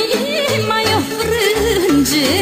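Romanian folk band music: an ornamented lead melody over a steady pulsing bass beat.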